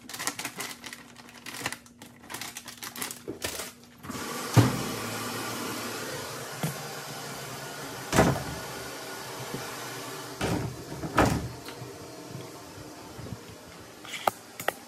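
Rustling and small clicks of a detergent bag being handled over an open top-loading washing machine. About four seconds in comes a thud and a steady rushing sound, typical of the washer filling with water. Two more loud thuds follow as the laundry closet door is pushed shut.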